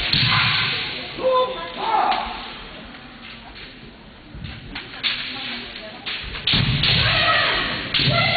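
Kendo bout: fencers shouting kiai, loud in the first two seconds and again near the end, with thuds and a few sharp clacks of bamboo shinai in the quieter middle.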